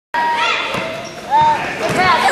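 A basketball bouncing on a gym floor a few times as it is dribbled, starting abruptly after a brief silence, under high-pitched shouting voices of children and spectators in a gym.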